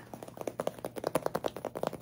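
Fast, uneven tapping of fingernails on a squishy foam milk-carton toy, many small clicks a second.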